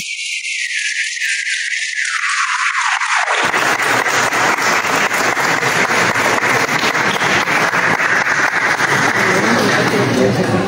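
A crowd applauding steadily, a dense patter of many hands. For the first three or so seconds it sounds thin and tinny, then fills out to a fuller sound that carries on evenly.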